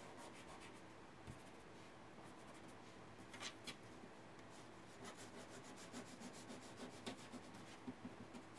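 Faint scratching of a graphite pencil shading on drawing paper in quick, repeated strokes, with a few stronger strokes about three and a half seconds in.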